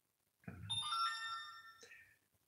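A phone's short electronic alert chime: several bright tones come in one after another, ring on together for about a second, then fade and stop.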